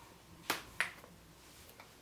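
Two sharp, short plastic clicks about a third of a second apart, with a fainter click near the end, from the cap and nozzle of an aerosol whipped cream can being worked by hand.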